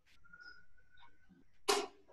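Faint steady tone with a small click about a second in, then one short loud rush of noise near the end, heard over an online conference call's audio line.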